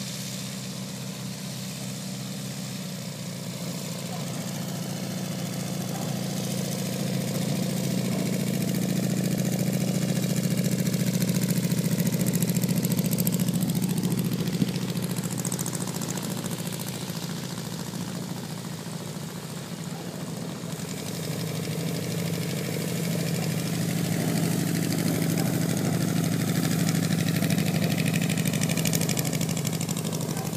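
An engine running steadily, its sound swelling to a peak, easing off, then swelling again. A single brief click comes about halfway through.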